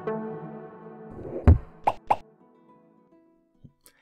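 Short electronic intro jingle for a logo animation: a held chord fades out, then a deep boom about a second and a half in, followed quickly by two short whooshes, and the sound dies away.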